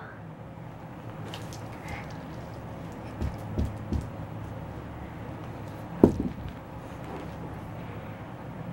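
Soft thumps and knocks from a plastic hula hoop being handled on a carpeted floor: a few light clicks, three dull thumps a little after three seconds in, and one sharper knock about six seconds in.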